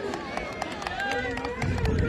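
Crowd of men at an outdoor kabaddi match, with voices calling and shouting and scattered sharp claps or clicks; one voice holds a long, steady call in the second half.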